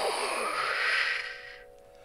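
A man's long, audible exhalation, a slow breath out through the mouth as part of a qigong breathing exercise. It fades away about a second and a half in.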